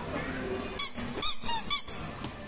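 Four short, high-pitched squeaks in quick succession, the first just under a second in.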